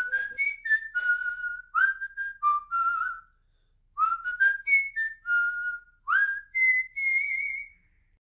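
A person whistling a short tune in two phrases, each note scooping up into its pitch, with a pause of about a second between the phrases.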